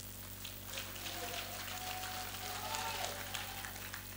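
A pause in the speech with low hall room tone: a steady electrical hum, faint hiss, and a faint murmur of voices in the background through most of the pause.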